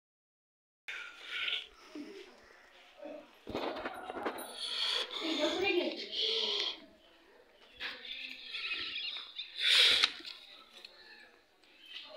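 Indistinct human voices talking in short, broken stretches.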